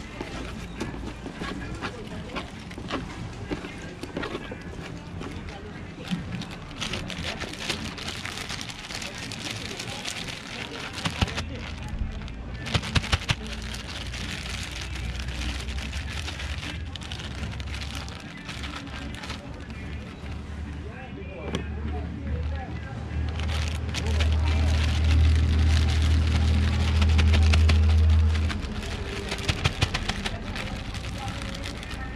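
Plastic bag crinkling and rustling while fish are shaken and coated in a flour and cornmeal mix. Under it runs a low rumble that grows much louder about three-quarters of the way through, then cuts off suddenly.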